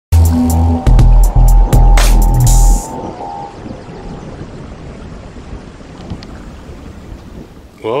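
Intro music sting: about four loud, deep bass hits with a held tone over them in the first three seconds. It then drops to a quieter, even rumbling noise bed, and a man's voice comes in at the very end.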